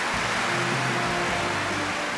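News title-graphic sting: a steady rushing whoosh with a few faint held music notes underneath, fading slightly near the end.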